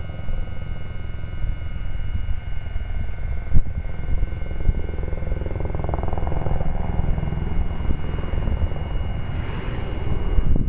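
Electric-hydraulic power trim pump of a Volvo Penta SX outdrive running with a steady whine and hum as it tilts the drive down. There is one sharp click about three and a half seconds in.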